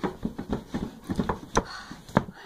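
Wooden dresser drawer being pulled open: a run of short knocks and scrapes, with one louder knock about one and a half seconds in.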